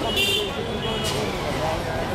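Busy street ambience: a crowd's background voices over traffic noise, with a brief high-pitched toot near the start.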